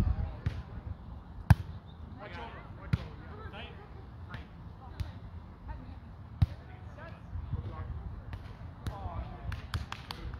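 A volleyball being struck by players' hands and arms during a sand volleyball rally: separate sharp smacks, the loudest about a second and a half in, others a few seconds apart, and several quicker ones near the end.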